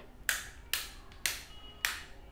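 Four sharp clicks, evenly spaced about half a second apart.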